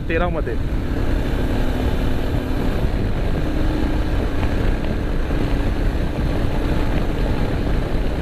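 Motorcycle engine running steadily at highway cruising speed, with a heavy low rumble of wind on the microphone.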